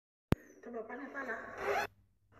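A sharp click near the start, then a muffled, wordless voice mixed with rubbing and rustling as the phone is handled. The sound grows louder and then cuts off suddenly just before the end.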